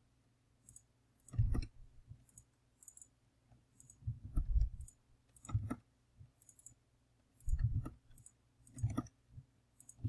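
Computer mouse clicking irregularly, about a dozen clicks, some with a duller knock, as files are selected and dragged.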